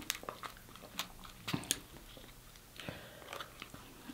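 Kitchen scissors snipping through the shell of a king crab leg: a handful of quiet, scattered snips and cracks.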